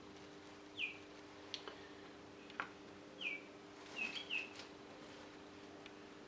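A small bird chirping: a handful of short chirps that fall in pitch, the first about a second in and several close together about four seconds in. Under them runs a steady low hum, with a couple of light clicks.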